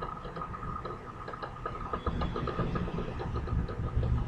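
Faint steady background hum with a thin high whine through it and scattered faint ticks: the background noise of the recording setup in a pause between speech.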